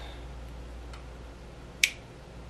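A single short, sharp click near the end, made while a small rocker switch is handled with multimeter probes on its contacts. A faint tick comes about a second in, and a low steady hum runs underneath.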